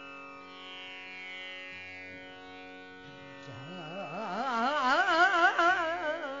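A tanpura drone sounds alone, then about three and a half seconds in a woman's voice enters, singing a tappa in Raag Des without tabla, her pitch swinging up and down in quick, wavering turns and growing louder.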